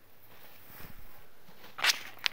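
Freshly mown grass rustling as it is pitched onto a heap, with one loud, brief swish near the end as stalks brush close past.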